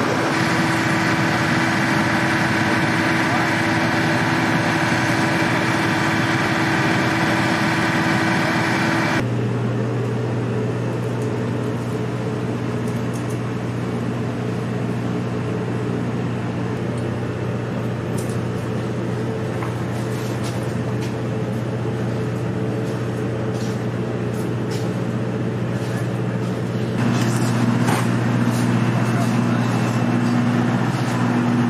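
A military vehicle's engine running steadily. About nine seconds in it gives way abruptly to a deep, steady equipment hum, with faint clicks of laptop keys being typed later on. The hum grows louder near the end.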